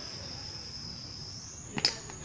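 Steady high-pitched buzzing of insects, with a sharp knock near the end as the cricket ball bounces on the concrete practice pitch.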